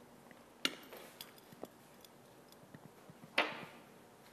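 Light clinks and taps of laboratory glassware: a sharp clink about half a second in, a few small ticks, then a louder ringing clink near the end.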